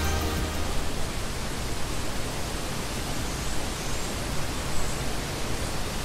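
Music ends about a second in, leaving a steady, even rushing hiss.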